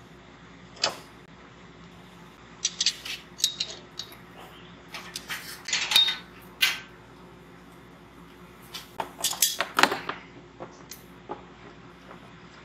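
Metal pipe and fittings being handled and worked in the top ports of a clear acrylic tank: several clusters of sharp clicks and knocks, over a steady low hum.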